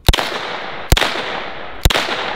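Three shots from a semi-automatic Uzi 9mm short-barreled rifle, fired about a second apart, each followed by a long echoing tail.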